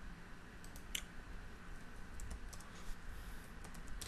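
Faint computer keyboard and mouse clicks as a ticker symbol is typed into charting software: one sharper click about a second in, then a few scattered keystrokes.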